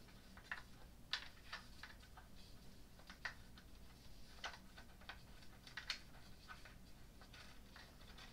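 Faint, irregular small clicks of an Allen wrench turning and being repositioned in a bolt head while tightening a screw into a crib rail.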